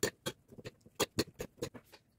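Two metal forks tossing shredded red cabbage salad on a ceramic plate: irregular clicks and scrapes of the tines against the plate, several a second.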